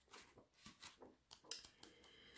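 Near silence: room tone with a few faint, soft clicks, the most noticeable about one and a half seconds in.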